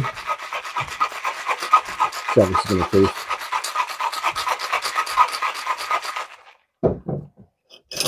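Ice rattling inside a cocktail shaker as a drink is shaken hard: a fast, steady rattle that stops about six seconds in.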